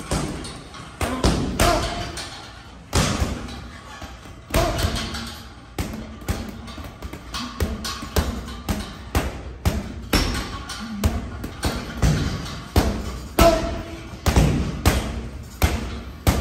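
Boxing-gloved punches landing on a hanging heavy bag, each a sharp thud, thrown in quick, uneven combinations with short gaps between flurries.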